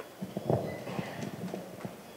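Irregular light knocks and shuffles of people moving on a hard floor at a church altar, like footsteps and objects being set down, with a faint murmur in between.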